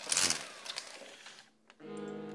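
Slatted window blinds pulled open: a sudden burst of rattling, fading over about half a second, then a few lighter clicks. Music starts near the end.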